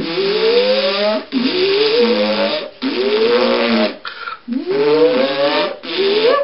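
Time-machine sound effect as the switch is thrown: a whirring that rises and falls in pitch four times, each sweep about a second long with short breaks between them, over a steady hiss.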